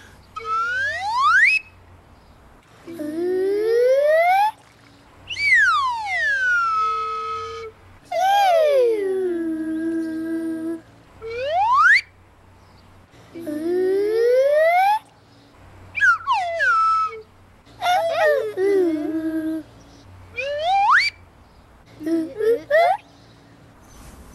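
Slide whistle glides answered by voices copying them: about five rounds of a whistle swoop followed by a lower vocal swoop in the same direction, rising or falling in turn, with short pauses between.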